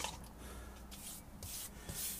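Faint, soft swishing of a paintbrush spreading a wax release agent over a modelling-clay sculpt, in a few irregular strokes.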